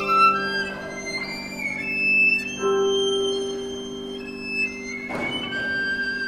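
Violin playing classical music: long held notes joined by slides between pitches, with a sharp accented attack about five seconds in.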